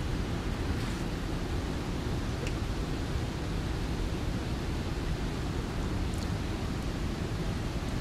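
Steady, even rushing background noise outdoors, with a few faint clicks.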